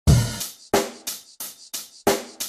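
Drum-kit intro of a song: a kick drum with a cymbal crash, then four sharper drum and cymbal hits about a third of a second apart, each ringing out and fading before the next.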